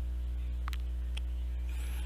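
Steady electrical mains hum with its stacked overtones, picked up on the recording, with a faint click or two in the middle.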